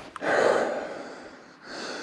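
A man breathing hard through two heavy breaths, the first the louder. He is winded from walking up a steep ridge in snow.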